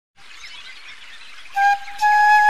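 Birds chirping over a soft outdoor ambience, then about one and a half seconds in a flute starts a held note, opening a piece of music.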